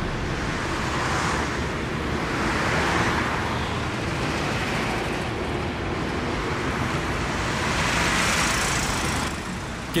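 Road traffic noise: a steady wash of passing vehicles that swells a few times and drops away near the end.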